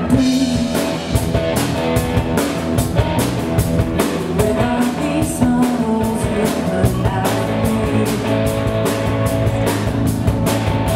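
A live rock band playing: a Pearl drum kit keeping a steady beat under electric guitars.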